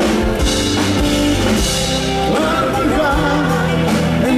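A live pop band playing through a PA system: sung vocals over a drum kit, electric guitar and keyboards.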